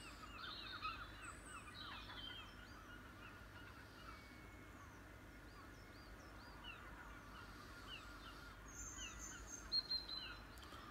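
Faint dawn chorus of birds calling and singing, many short chirps repeated in quick runs. Two sharp clicks come near the end.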